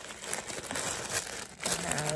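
Thin tissue paper crinkling and rustling in irregular crackles as it is handled and unfolded.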